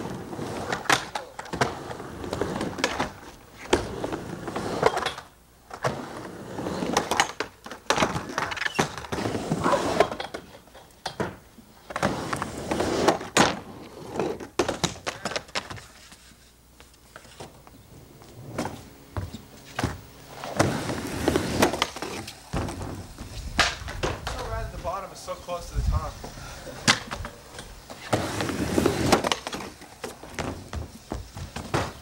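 Skateboard wheels rolling on a wooden mini ramp, broken by many irregular sharp clacks and thuds as the board's tail and wheels hit the plywood and boards clatter down after bails.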